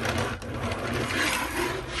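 Steady rubbing and scraping handling noise lasting about two seconds, as things are moved about on a desk or the recording phone is handled.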